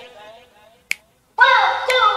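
Show soundtrack: the music trails off, a single sharp click sounds about a second in, and after a short silence a voice cuts in.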